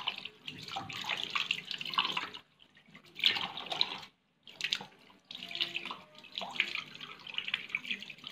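Water from a tap splashing into a sink as something is washed by hand, in irregular splashes broken by two brief silences.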